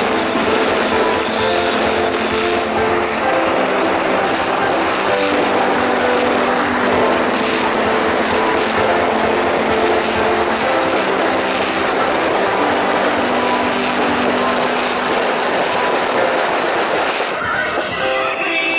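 Continuous dense crackling of aerial fireworks bursting overhead, mixed with music that has held notes. Near the end the crackling gives way to the music alone.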